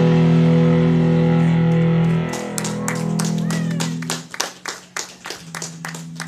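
The last chord of a live rock song from electric guitar and keyboard ringing out, cut short about two seconds in, followed by a small club audience clapping with a few cheers over a faint lingering guitar tone.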